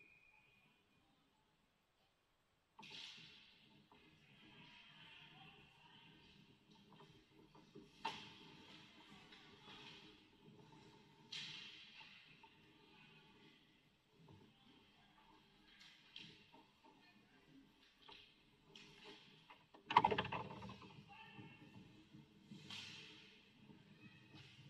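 Faint indoor ice hockey rink sounds: skates on the ice and sticks and puck clattering, with several sharp, echoing knocks, the loudest about twenty seconds in, like a puck striking the boards. Faint background music and distant voices run under it.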